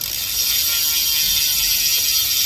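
Rear hub of a hydraulic-disc road bike freewheeling on a work stand: the freehub's pawls give a fast, steady ratcheting buzz as the wheel, cassette and disc rotor spin.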